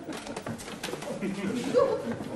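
A sudden commotion: several knocks and bumps mixed with short wordless vocal cries, the loudest cry near the end.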